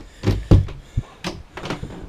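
Wooden cabin door on a boat being handled and opened: a few low thumps and sharp knocks, the loudest about half a second in, followed by fainter clicks.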